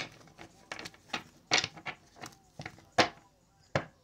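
Tarot cards being shuffled and handled by hand: an irregular run of soft card clicks and flicks, a few sharper ones among them.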